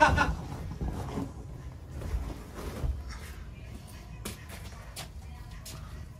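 Faint background music, with a brief bit of speech at the very start and a few light clicks.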